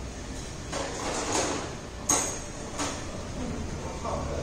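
Handling noise around a motorcycle: a scraping rustle about a second in, then a sharp click a little after two seconds and a softer click shortly after.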